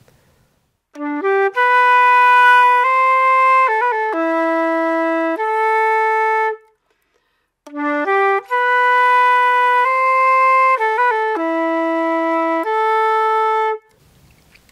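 Concert flute playing the first phrase of a waltz tune's B part twice over, with a short break between. Each time it opens with a pickup of a few quick notes and goes on into long held notes.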